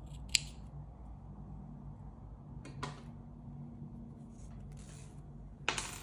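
Scissors snipping through a yarn tail: one sharp snip just after the start, followed by softer clicks and rustling from handling the scissors and the crocheted fabric.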